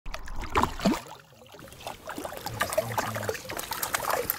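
Water splashing and trickling in small irregular splashes as a hooked fish thrashes at the surface beside a boat.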